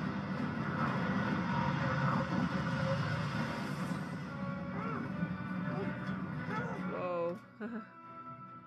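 Movie soundtrack of a large jet plane in flight at night: a loud, dense rushing roar of engines and wind with music under it, dropping away suddenly near the end.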